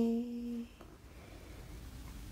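A woman's steady, closed-mouth hum, held on one pitch and fading out within the first second, followed by faint room tone.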